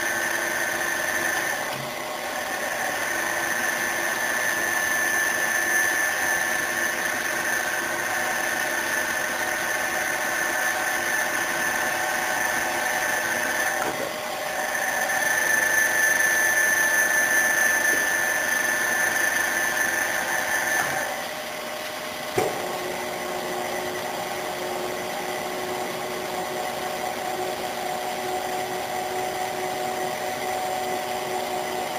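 Phoebus PBM-GVS 300A milling machine running with a steady high whine that dips briefly twice. About two-thirds of the way through, the whine stops, and after a click a lower steady tone takes over.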